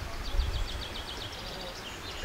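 A small bird singing a rapid trill of evenly spaced high notes, about nine a second, lasting just over a second, over a steady low rumble.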